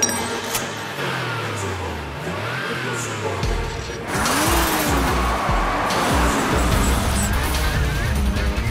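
Action film soundtrack of background music, with a sharp click at the very start. About four seconds in, a car engine revving and tyres skidding on loose gravel come in louder over the music.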